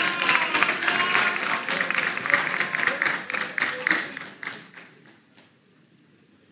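Studio audience clapping and cheering, dying away about four to five seconds in.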